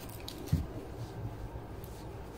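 A single soft, low thump about half a second in, over faint room tone.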